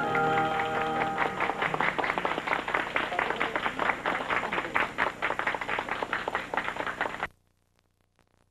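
The last notes of a song fade out under studio audience applause. The applause cuts off abruptly about seven seconds in, where the recording ends.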